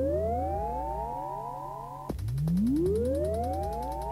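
Breakdown of a 1993 rave track on a DJ mix cassette: a synthesizer tone swoops up from low and levels off, trailed by fading echoes of itself, then swoops up again about halfway through. The beat has dropped out.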